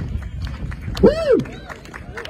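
Scattered clapping from an outdoor audience as a live song ends, with one voice calling out briefly, rising and falling in pitch, about a second in.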